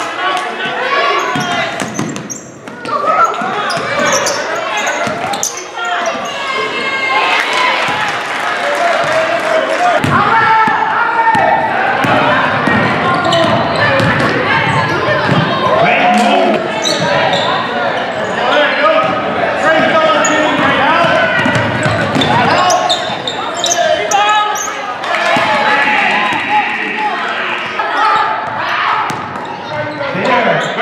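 Game audio from a girls' high school basketball game: a basketball bouncing repeatedly on a hardwood gym floor, with players' and spectators' voices throughout.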